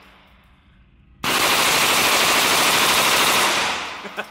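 MP5 submachine gun firing one continuous full-auto burst about two and a half seconds long, starting just over a second in.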